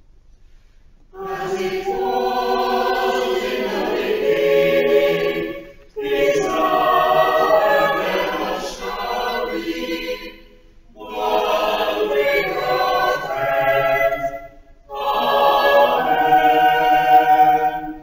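Church choir singing in harmony in four phrases, each a few seconds long, with short breaks between them.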